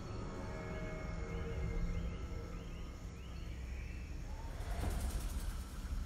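Film soundtrack: low, droning score music over jungle ambience, with a run of short rising chirps in the first half and a swelling hiss near the end.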